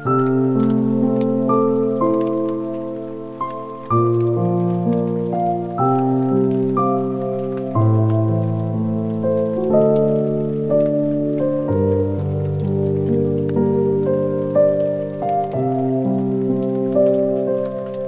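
Calm background music of slow, sustained chords that change every one to two seconds, with faint scattered clicks above it.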